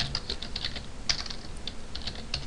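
Computer keyboard being typed on: an irregular run of short key clicks.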